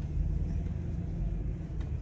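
Steady low rumble of a car driving slowly on a dirt road, heard from inside the cabin: engine and tyre noise.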